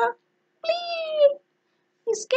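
A woman's single high-pitched, drawn-out 'bleah!' in a squeaky character voice, lasting under a second and dropping slightly in pitch at the end.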